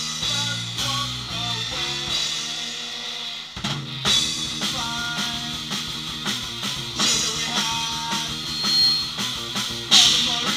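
Rock band playing: a drum kit keeps a steady beat of kick, snare and cymbals under electric guitar and bass guitar. About three and a half seconds in the music thins out for a moment, then the band comes back in hard on a loud hit.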